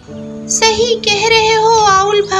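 A high, child-like voice sings one long, slightly wavering note over background music. The note starts about half a second in.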